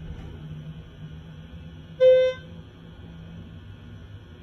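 A hydraulic elevator's electronic chime sounding once, a short clear beep about halfway through, as the descending car reaches the next floor. Under it the car's steady low travel hum goes on.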